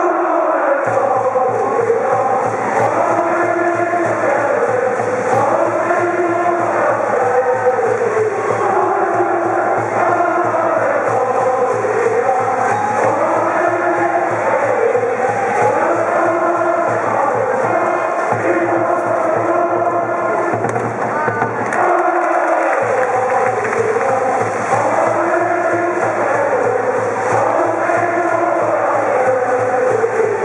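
High-school brass band playing a baseball cheering song (ouenka), a repeating phrase over a steady low part, with the student cheering section's voices chanting along. The low part drops out for about a second at the start and again about two-thirds of the way through, then comes back in.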